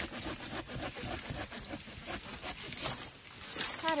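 Hand pruning saw cutting through a woody wild tobacco bush stem, a quick steady rhythm of back-and-forth strokes, several a second.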